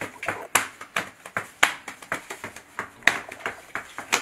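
Sharp hand slaps in an irregular run of about two or three a second.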